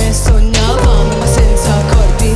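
A live band playing an electronic pop song: a steady drum beat with bass, sustained synth lines and a sung lead vocal.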